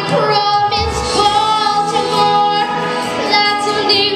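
A girl singing into a microphone, holding long sustained notes; the notes near the end waver with vibrato.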